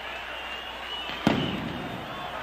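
A single sharp bang about a second in, ringing out briefly, over a faint steady background.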